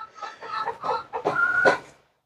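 Birds calling: a run of short calls, then a longer held call near the end, which cuts off abruptly.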